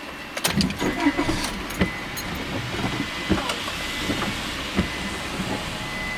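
Car engine starting about half a second in, then idling, with scattered clicks and knocks from inside the cabin and a steady high-pitched tone.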